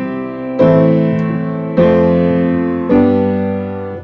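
Piano playing a plain C–Am–F–G chord progression: the C chord is ringing at the start, then three new chords are struck about a second apart, each left to ring and fade.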